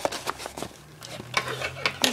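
Brown paper mailing envelope crinkling and rustling as it is handled, with a few short sharp crackles.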